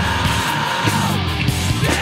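A live nu-metal band playing loud: distorted electric guitar, bass and drums, with a high held note over the riff that slides down in pitch near the end.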